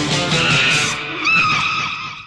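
Background music over the noisy tail of a special-effects explosion, fading out near the end.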